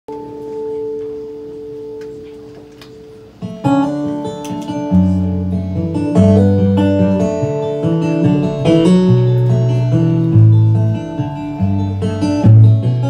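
Instrumental intro of a live country-folk band: a held ringing tone fades, then about three and a half seconds in picked acoustic guitar comes in, joined by bass guitar notes from about five seconds in.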